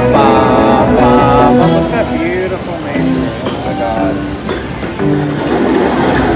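Video slot machine's win-celebration jingle, melodic electronic notes with a clicking count-up as the win meter rises. Near the end a rushing sound effect comes in as the next bonus animation starts.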